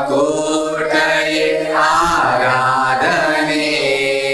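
Small mixed group of men and women singing a Telugu Christian worship song together, in slow, long-held notes.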